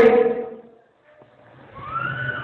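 A man's voice delivering a sermon: a held syllable fades out, there is a short pause of near silence, then his voice returns faintly with a rising pitch as he starts the next word.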